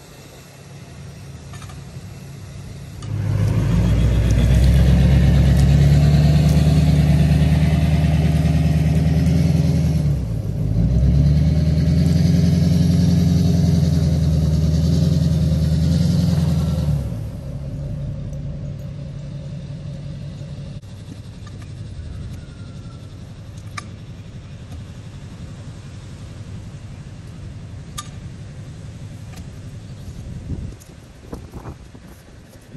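An engine starts up about three seconds in and runs loudly and steadily, with a brief dip near the middle, then stops about seventeen seconds in. After that there is only a quieter steady background with a couple of sharp clicks.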